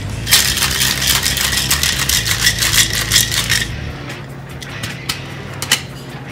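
Ice rattling hard inside a stainless steel Boston shaker (metal tin over a mixing glass) as a cocktail is shaken, a rapid clatter lasting about three and a half seconds that then stops. A few light clicks follow near the end as the shaker is handled.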